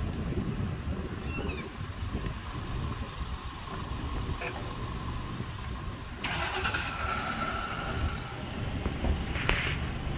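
Low, steady wind rumble on the microphone outdoors, with a faint higher hum joining about six seconds in.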